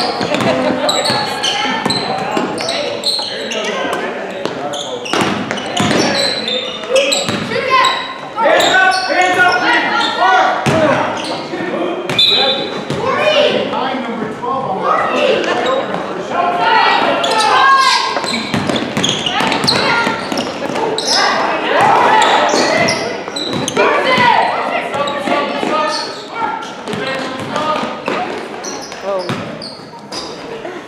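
Youth basketball game in a gymnasium: voices of players and spectators calling out, unintelligible, over a basketball bouncing on the hardwood, echoing in the hall.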